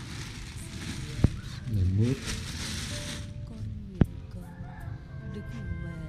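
Thin plastic bags stuffed with vegetables rustling and crinkling as they are handled, for about the first three seconds. Two sharp clicks follow, one about a second in and one near four seconds.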